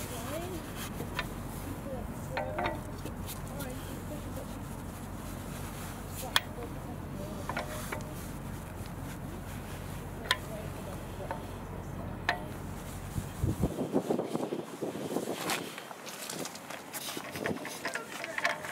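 Steel stock lug wrench fitted onto a car's wheel bolts and turned to loosen them: scattered sharp metallic clicks over a steady low rumble. A busier stretch of rubbing and clinking follows in the last few seconds.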